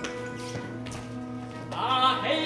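Opera's instrumental accompaniment holding a sustained chord between sung lines, with a couple of faint knocks about half a second and a second in.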